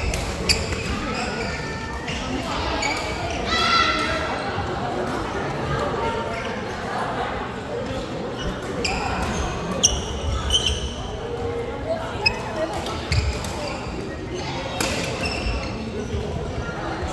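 Badminton play on a wooden sports-hall floor: scattered sharp clicks of racquets striking the shuttlecock, short high squeaks of court shoes and thuds of footfalls, all echoing in the large hall.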